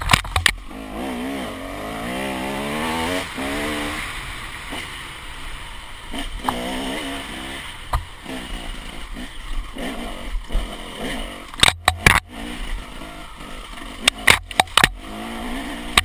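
KTM 300 two-stroke enduro motorcycle engine revving up and down as it is ridden over a rough dirt trail, heard from a helmet-mounted camera. Several sharp knocks come in the second half.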